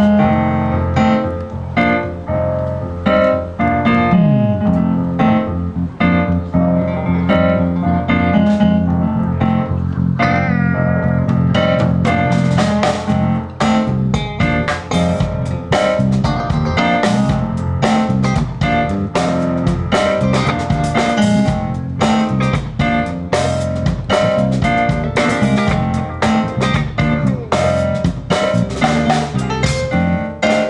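Amplified live band playing: keyboard, electric guitars and drum kit. A low note slides down about four seconds in, and from about twelve seconds the drums play a steady beat with bright cymbal strokes.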